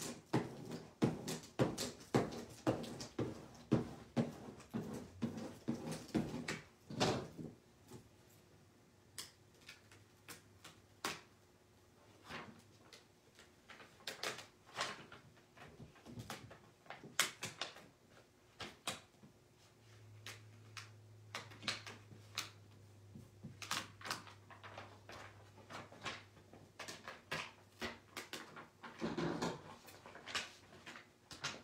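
Clear plastic carrier sheet of heat transfer vinyl crackling and crinkling as it is rubbed with a squeegee and peeled off a wood panel: dense irregular clicks over the first several seconds, then scattered ones.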